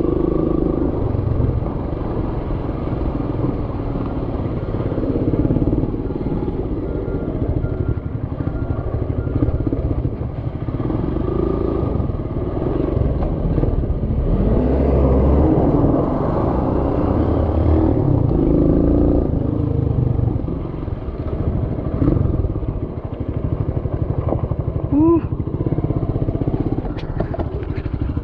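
Small motorcycle engine running while riding over a dirt road, its pitch rising and falling with the throttle, with rumble from wind on the microphone.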